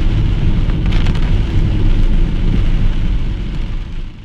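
Heavy rain on a moving car, heard from inside the cabin, over a steady deep rumble of road and engine. It fades away near the end.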